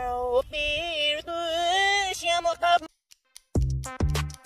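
A voice singing a short meme tune in held, gliding notes. It cuts off a little before three seconds in, and after a brief gap an electronic beat with heavy bass starts as countdown music.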